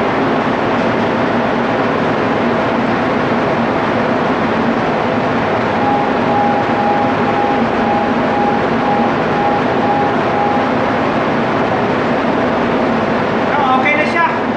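A ship's diesel generator running, a loud steady machinery din with a low hum underneath. In the middle, a thin beep repeats about twice a second for several seconds.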